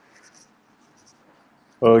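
Quiet room tone over a headset microphone with a few faint, short scratchy sounds, then a man says "ok" near the end.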